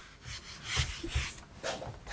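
A handheld whiteboard eraser rubbed across a whiteboard in several short scratchy strokes, wiping off marker writing.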